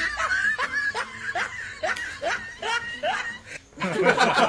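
A man laughing: a long run of short laughs, each rising in pitch, about two or three a second.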